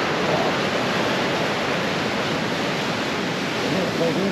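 Steady, unbroken rush of sea surf breaking on a rocky shore.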